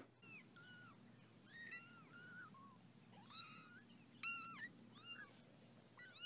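Small kittens mewing: a string of about ten short, high-pitched mews, each rising and falling in pitch, faint.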